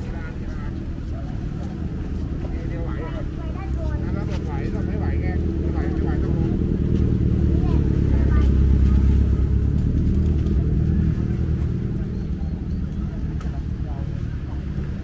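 A motor vehicle passing on the road beside the promenade: a low engine and road rumble that builds to its loudest about eight to nine seconds in, then fades away. Voices of passers-by are heard beneath it in the first half.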